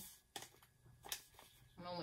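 Small kraft paper bag folded over at its pre-scored top, the paper giving a few short crinkles.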